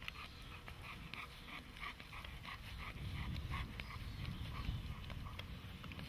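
Doberman panting in a quick, steady rhythm, about four breaths a second, fading in the last couple of seconds, over a low rumble.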